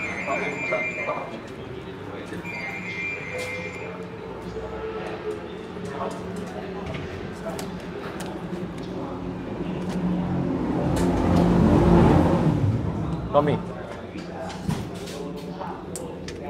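Pit-garage ambience of muffled voices over a steady low hum, with a high tone sounding twice in the first four seconds. A low rumble builds to a peak about twelve seconds in and fades away.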